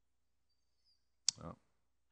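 Near silence with a faint low hum, then one sharp click about a second and a quarter in, just before a man says "Well".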